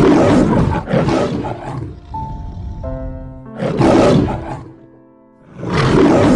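A lion roaring in three loud bursts, with a light children's music jingle playing in the gaps between them.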